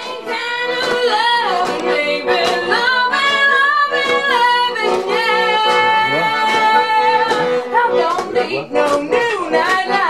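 A woman singing a song live, with long held notes that slide between pitches.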